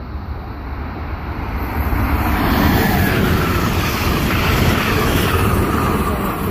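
Amtrak electric passenger train passing at speed: a rushing of wheels on rail and air that builds over the first two seconds and then holds loud.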